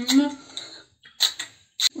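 A brief bit of voice, then two short, sharp clicks of kitchen items being handled, about half a second apart.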